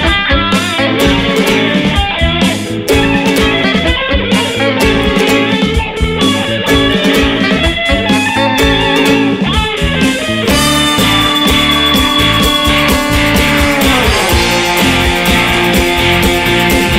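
Instrumental break of a 1960s-style Italian beat song: electric guitar playing chords over a steady driving beat. About ten seconds in, the band moves to long held notes, which slide down in pitch near the end.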